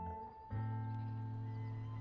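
Music score: a held chord of sustained notes fades, and a new chord with a deep low note comes in about half a second in and holds steady.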